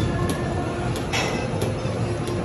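Treadmill running under a walker: a steady belt-and-motor noise with footfalls landing on the belt about three times a second.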